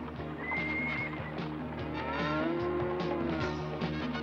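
Dramatic cartoon background music with animal sound effects: gliding, arching animal cries and a clatter of hoofbeats.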